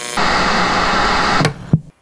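Television static: a steady white-noise hiss of an untuned CRT set that breaks off after about a second and a half. A short low pop follows near the end as the set switches off.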